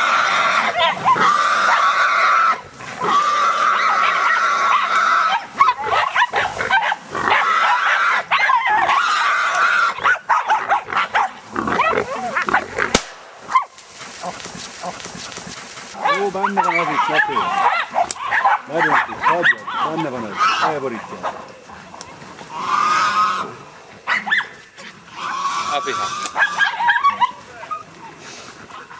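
A wild boar, held at bay by a pack of hunting dogs, squealing in long, shrill screams over the first several seconds. The dogs bark and yelp around it, most densely in the second half, with more squeals near the end.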